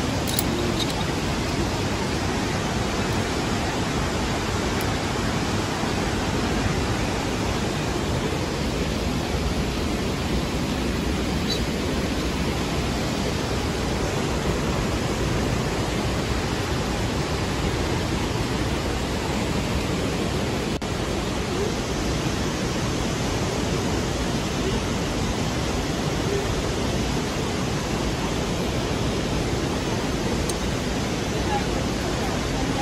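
Steady, even rushing of falling water from YS Falls, loud and unbroken throughout.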